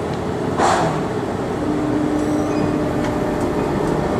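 Von Roll Mk III monorail train running, heard from inside the car: a steady running noise with a brief rush of noise about half a second in, then a steady low hum that sets in about a second and a half in.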